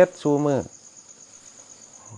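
Crickets trilling steadily: a continuous high-pitched, evenly pulsing chirr.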